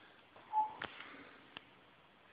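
Faint handling noise from a hand-held camera phone: a few light clicks and a short squeak about half a second in.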